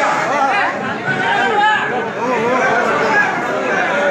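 A crowd of many people talking over one another, a dense babble of overlapping voices.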